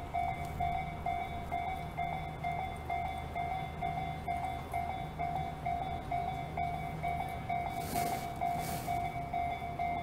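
Japanese railway level-crossing warning bell ringing with its repeated single-tone ding, about two rings a second, while the barriers are down. Near the end a brief hissing noise sounds over it.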